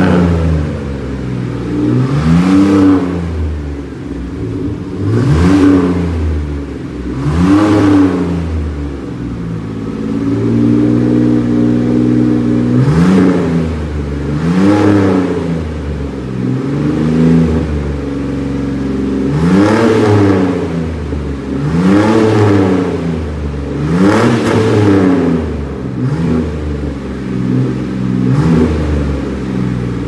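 Chevrolet Day Van's engine revved repeatedly through its modified twin-tip exhaust: about a dozen blips, each rising and falling back toward idle every two to three seconds, with one longer hold at higher revs near the middle.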